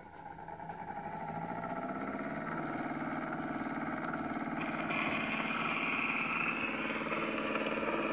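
Spring-wound gramophone motor whirring steadily as the turntable comes up to speed, rising over the first couple of seconds. A hiss joins about halfway through.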